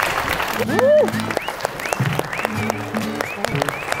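A group clapping rapidly, with a few rising whoops, over background music.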